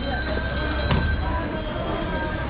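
A large butcher's knife strikes a wooden log chopping block once, about a second in, as goat meat is cut. Steady high-pitched tones run underneath.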